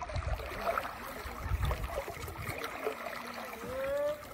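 Water lapping and splashing as a paddle strokes through a river from a small paddled craft, over an irregular low rumble. A short rising tone sounds near the end.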